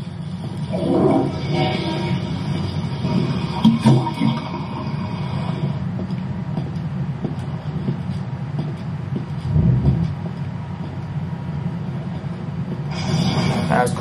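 A steady low mechanical rumble from the animated episode's soundtrack, with a few brief sound effects in the first four seconds and a heavy thud just before ten seconds in.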